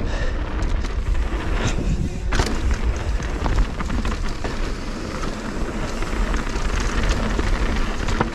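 Mountain bike ridden fast down a dirt singletrack, heard as wind noise on the camera microphone, tyres running over dirt and stones, and a few sharp knocks as the bike hits bumps.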